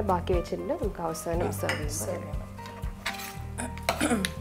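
Metal spoon scraping and clinking against a stainless steel frying pan as a thick lamb and chickpea mixture is stirred, with several sharp strokes.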